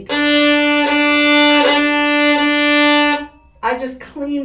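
A single violin note, bowed steadily for about three seconds, near the frog with heavy weight and a fast bow: a deep, rich sound instead of a scratchy crunch.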